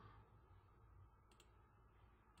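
Near silence: faint room tone, with a quick pair of faint computer-mouse clicks about a second and a half in.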